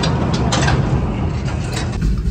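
Corrugated metal sliding shed door being pulled shut, rolling and rattling on its track with a steady rumble.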